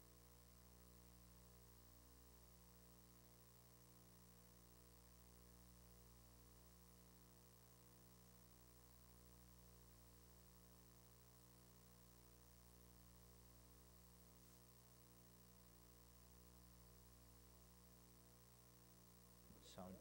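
Near silence: a faint, steady electrical mains hum on the open microphone line of the hearing room's sound system. A voice begins a sound check at the very end.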